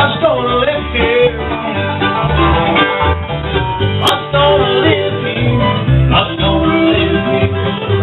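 A bluegrass band playing live on acoustic guitar and upright bass, the bass plucking a steady, even beat under the strings.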